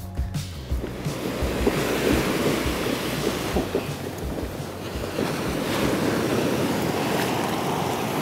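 Surf washing onto a beach, with wind buffeting the microphone in irregular low thumps. Background music stops just after the start.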